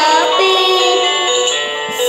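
A boy singing a song into a handheld karaoke microphone, his voice carried with music, with a brief pause near the end.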